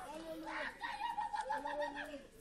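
Faint, drawn-out voices, several overlapping, sounding in long gently arching tones like murmured or hummed responses.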